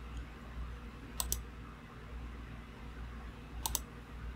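Two quick double clicks from operating a computer, one about a second in and one near the end, over a faint low hum.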